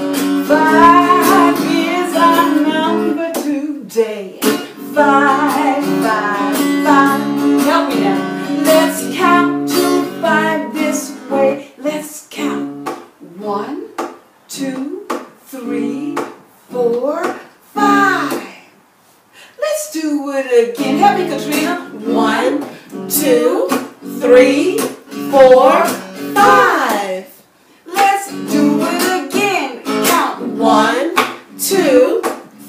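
A woman singing a simple children's song while strumming an acoustic guitar. The strummed chords are steady for the first half, then the singing comes in shorter phrases with a brief pause a little past the middle.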